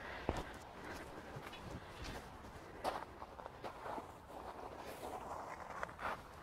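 Footsteps on a gravel garden path: a few soft, irregular crunches and scuffs.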